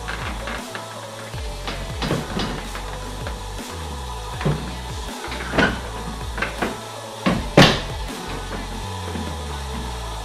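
Background music with a steady bass line, over a series of sharp plastic clicks and knocks as a trim piece at the front of the car is pressed and snapped into its clips. The loudest snap comes about three-quarters of the way through.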